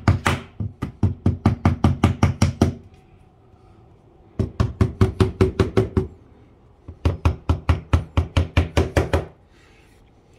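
A hammer tapping small screw anchors into drilled-out screw holes around a cargo trailer window frame: three runs of quick, light knocks at about five a second, with short pauses between runs.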